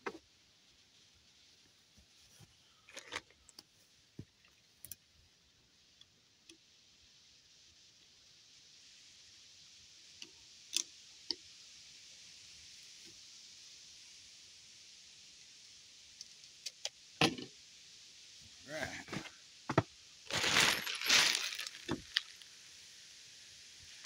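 Scattered light clicks and knocks of hand tools and lumber being handled, with a dense burst of small metal hardware rattling, like screws in a bag, about 20 seconds in. A soft hiss comes up in the background midway.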